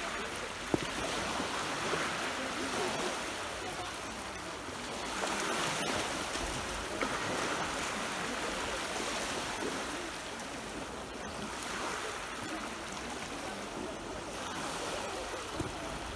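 Small sea waves breaking and washing up a sandy shore close by, the surf swelling and fading every few seconds. A single sharp click about a second in.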